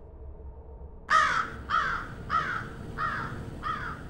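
A bird calling five times in a row, starting about a second in, with roughly one call every 0.6 seconds.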